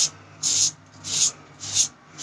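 Double-edge safety razor with a Treet blade scraping through lathered stubble on the neck: four short raspy strokes, about two a second.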